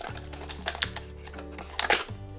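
A few light plastic clicks and knocks as an instant film pack is pushed into the film compartment of the Polaroid Instant Lab back, with the loudest cluster near the end. Background music with a steady bass runs underneath.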